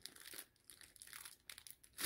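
Faint, irregular crinkling of the clear plastic wrap around rolls of deco mesh as they are handled.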